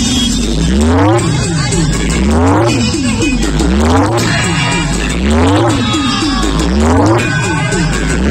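Large outdoor DJ speaker stack playing loud electronic music, built from repeated siren-like pitch sweeps rising and falling about once a second over heavy bass that climbs in steps.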